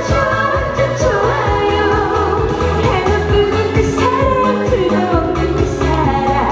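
A woman singing a trot-style pop song into a handheld microphone over an amplified dance backing track with a steady bass beat.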